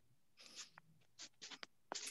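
Near silence: room tone over a call line, with a few faint, short scratchy noises about half a second in and again in a quick cluster near the end.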